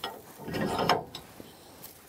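A steel hitch pin being pushed through the holes of a steel ball mount and clevis attachment: a click, then a metal-on-metal scrape of about half a second.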